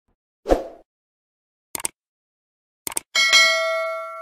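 Subscribe-button animation sound effects: a short thump, then two quick mouse clicks about a second apart, then a bell chime that rings out and fades.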